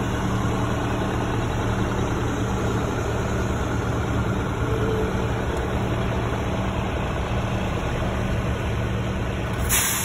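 Heavy wrecker's diesel engine running steadily while it pulls on the cable. A short, sharp hiss of released air, like an air brake, comes just before the end.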